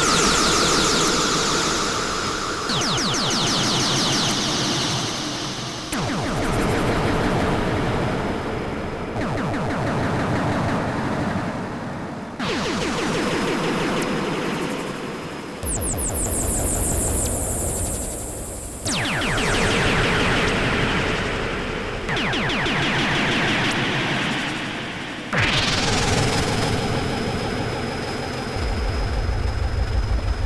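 Live electronic music from a Eurorack modular and Moog synthesizer rig with VCV Rack: a sequenced patch that changes every three seconds or so, each section starting loud and easing off, with a fast ticking, noisy texture in the highs over shifting bass notes. A rising sweep comes about 25 seconds in.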